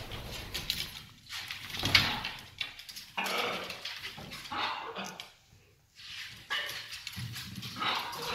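Hyacinth macaw lying on its back at play, giving harsh calls in short, irregular bursts, with a brief pause a little past the middle.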